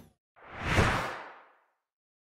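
Whoosh transition sound effects for animated icons popping onto the screen. The tail of one whoosh ends just at the start, then a louder whoosh swells and fades out within about a second.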